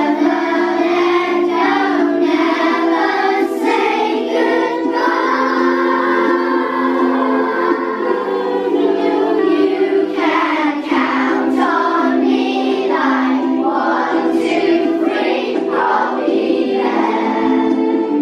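A class of young children singing a pop song together in unison over a steady musical accompaniment.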